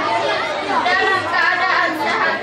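A girl speaking steadily, delivering a short speech.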